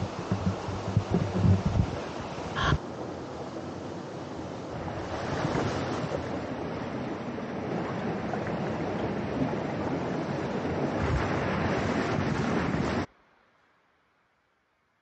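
Stream water rushing over rocks below a small waterfall, a steady wash of noise, with wind buffeting the microphone in the first two seconds and a short sharp sound about three seconds in. It cuts off abruptly about a second before the end.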